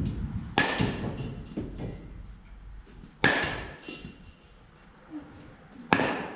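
A youth baseball bat hitting pitched baseballs: three sharp cracks, each with a brief ringing ping, roughly two and a half seconds apart, the last near the end. Smaller knocks follow the first hit.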